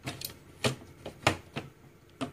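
A handful of sharp clicks and knocks from the hard drive's metal caddy and its SATA connector, handled inside an HP TouchSmart 300 all-in-one as the SATA cable is pushed to work it loose from the drive. The loudest knock comes just past the middle.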